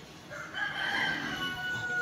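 A rooster crowing once: one long call that begins about half a second in and is still sounding at the end.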